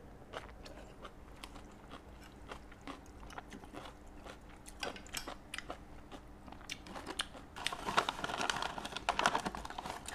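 Close-miked chewing and biting of soft rice noodles and blanched vegetables: a run of small wet clicks and crunches that grows louder and denser over the last two seconds or so.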